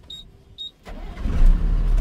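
A truck's diesel engine comes up loudly about a second in and settles into a heavy, steady low rumble. Before it, the cab is quiet apart from a short high beep about every half second.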